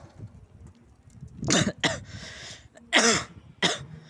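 A man coughing in two bouts: two hard coughs about a second and a half in, then two more around three seconds in, with a breath between.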